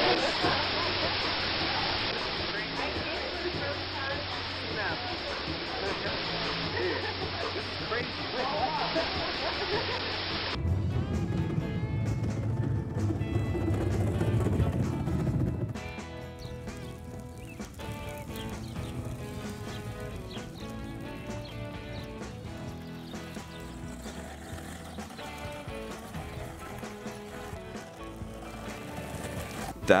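Busy room noise with indistinct voices, then a low rumble for about five seconds, then steady background music to the end.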